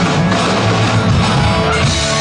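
Rock band playing live and loud: amplified guitar driving over a drum kit.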